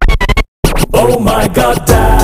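Hip-hop-style pop song: a short run of scratch-like clicks, a brief cut to silence about half a second in, then singing returns over the beat.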